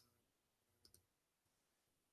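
Near silence, with a faint double click a little under a second in.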